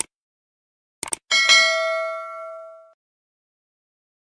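Subscribe-button animation sound effect: sharp mouse clicks, a quick double click about a second in, then a single bell ding that rings out and fades over about a second and a half.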